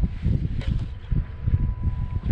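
Wind buffeting the microphone in low, gusty rumbles.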